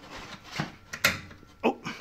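Two sharp clicks about half a second apart as a hydrogen filling socket is pushed onto a vehicle's fill connector. A man says a short "oh" near the end.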